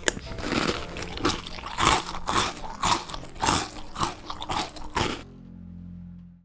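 Someone chewing crunchy cereal close to the microphone: loud crunches about twice a second, stopping about five seconds in, followed by a faint low hum.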